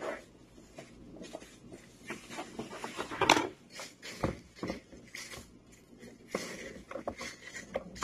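Handling noises from food prep: gloved hands rustling through rice in a plastic tub, a sharp knock a little over three seconds in as a cutting board is lifted, then a knife scraping chopped pieces off the board into the tub.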